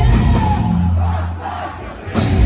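Heavy metal band playing live with the crowd shouting along. Partway through, the band thins to one held low note that fades away near the end, leaving mostly the crowd's voices.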